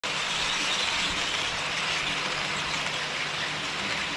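HO scale model trains running on KATO Unitrack: the steady rolling rush of small metal wheels on the rails, with a faint hum underneath. A freight train of car-carrier wagons passes close by.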